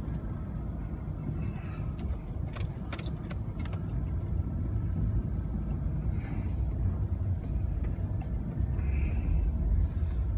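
Pickup truck driving slowly through deep snow, heard from inside the cab: a steady low rumble of engine and tyres, with a few light knocks two to three seconds in.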